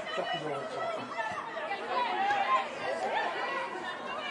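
Several voices calling and chatting over one another at a football pitch, with no single voice clear.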